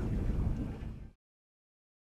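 Wind rumbling on the microphone out on open water, which cuts off abruptly about halfway through into dead silence.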